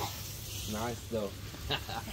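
Steady hiss of food cooking over a fire, with faint voices in the background.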